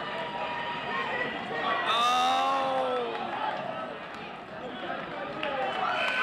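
Spectators shouting and yelling to the wrestlers, several voices at once over one another. The shouting is loudest about two seconds in.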